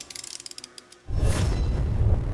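A quick run of rapid ratchet clicks from a hand torque wrench's ratchet mechanism. About a second in, a sudden deep boom opens a music sting.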